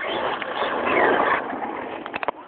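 HPI Bullet ST Flux brushless electric RC truck driving on an asphalt path: a noisy rush of tyres and drivetrain that swells, is loudest about a second in, then eases off.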